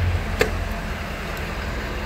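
The 6.7-litre Power Stroke turbo-diesel V8 of a 2014 Ford F-250 running just after being started, its start-up revs easing back into a steady idle within the first half second. A single sharp click about half a second in.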